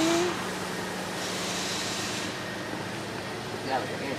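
A steady low mechanical hum with light outdoor background noise.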